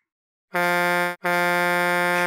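Cartoon truck horn sound effect: two steady honks at one unchanging pitch, a short one about half a second in, then a longer one of just over a second.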